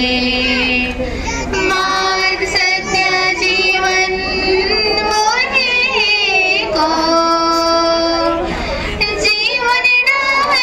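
High-pitched female singing voice in a song, holding long notes that waver and glide from one to the next.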